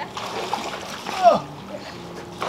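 Shallow pool water splashing and pouring as plastic bowls are dipped and scooped through it, with water running off the bowls. A short falling vocal exclamation comes about a second in.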